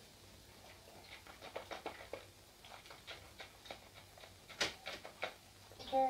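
Faint, irregular wet clicks and smacks of the lips and tongue as a sip of whisky is tasted and worked around the mouth, with a couple of louder smacks near the end.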